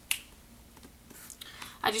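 A single sharp click just at the start, fading quickly into low room tone. A woman's voice starts near the end.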